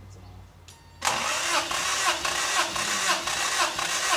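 Starter motor cranking the 1983 Toyota Tercel's four-cylinder engine over for a compression test, so it turns without firing. The cranking starts suddenly about a second in and goes on with an even, rhythmic chug.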